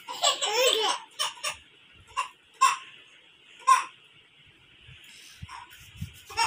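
A baby vocalising during a massage: a wavering high squeal in the first second, then a few short separate calls over the next three seconds, after which it goes quiet.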